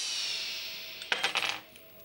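A high whistle-like tone slides downward and fades during the first second. About a second in comes a brief clatter of small hard objects with a slight metallic ring, like coins dropping.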